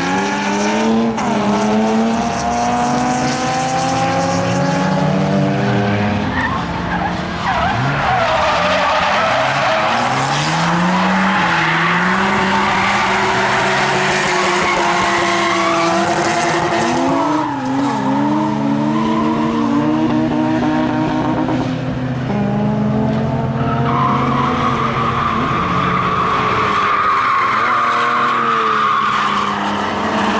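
Rear-wheel-drive BMW saloons drifting: engines revving up and down through gear changes, with long tyre squeals as the rear tyres spin and slide sideways. The squealing is heaviest through the middle stretch and again near the end.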